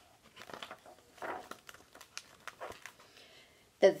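Paper rustling and crinkling of a picture book's page being turned and the book handled, in several short scuffs with a few light clicks.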